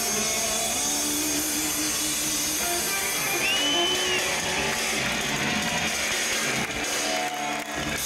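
Live rock band with electric guitars playing long held notes and chords. A short high tone rises and falls about halfway through.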